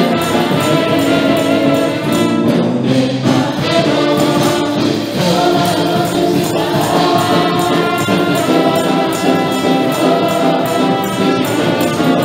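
Live gospel worship music: several women's voices singing a Spanish-language praise song in harmony over a full band with a steady beat.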